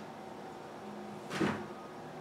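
A single dull thump about one and a half seconds in, from two cats wrestling on a tile floor.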